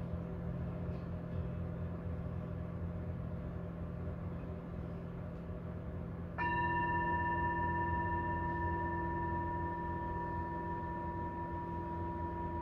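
Tibetan singing bowls ringing in overlapping steady deep tones. About six seconds in, another bowl is struck and rings on with a clear, higher tone above them.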